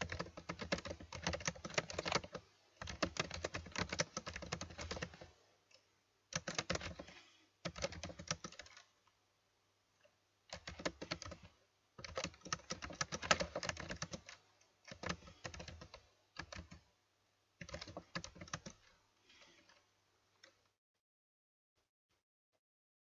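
Fast typing on a computer keyboard: rapid key clicks in runs of a second or two, broken by short pauses, stopping about a second before the end.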